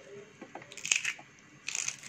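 Kitchen knife cutting through a crisp green bell pepper held in the hand: a few short crunching cuts, the loudest about a second in.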